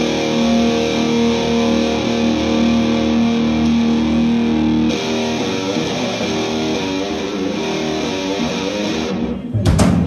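Live blues-rock band playing an instrumental intro: electric guitars ring out on held notes and chords, and the drums and bass come in with the full band near the end.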